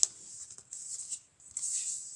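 Cardboard LP sleeves sliding and rustling against each other as a record is pulled from the box set and handled, with a sharp tap at the start.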